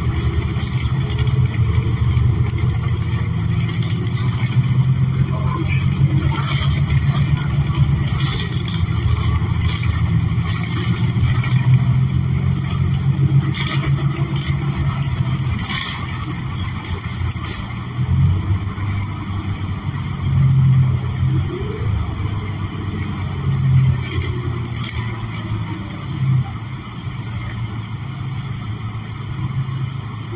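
Interior of a 2014 New Flyer XN40 natural-gas city bus on the move: a steady low drone from its Cummins Westport L9N engine and the road, with scattered clicks from the cabin in the middle stretch and the sound easing slightly in the second half.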